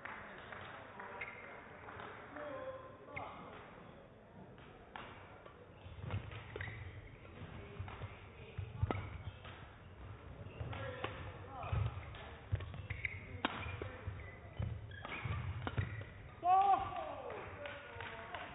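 Badminton rally: sharp racket strikes on the shuttlecock at irregular intervals, with low thuds of the players' footwork on the court. A man shouts near the end as the point is won.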